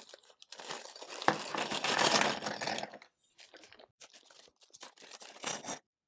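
Small clear plastic parts bag crinkling and rustling in the hands as a 34-pin IDC ribbon connector is worked out of it. The crinkling is loudest in the first half, then gives way to lighter rustles and small clicks.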